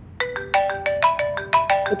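Mobile phone ringtone signalling an incoming call: a fast melody of short, bright notes that starts a moment in and keeps going.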